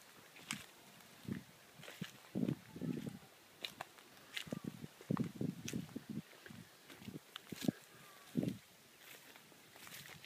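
Footsteps walking through long grass and leaf litter: an irregular run of soft steps and rustles, about one or two a second.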